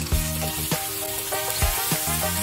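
Raw pork chops sizzling in hot oil in a ridged nonstick grill pan, the sizzle starting as the first chop goes in and holding steady, over background music.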